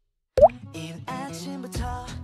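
A short rising 'plop' sound effect about half a second in, the loudest moment, right after a brief silence, followed by the start of a background pop song with steady instrumental notes.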